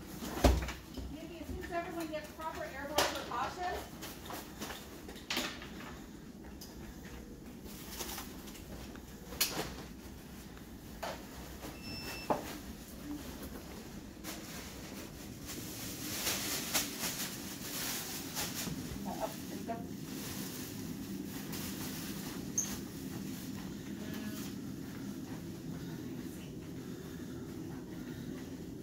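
Hospital staff handling a PPE bag and plastic sheeting: rustling with scattered clicks and knocks of equipment, the loudest a sharp knock about half a second in, and a longer spell of rustling a little past the middle. Faint, indistinct voices come early on.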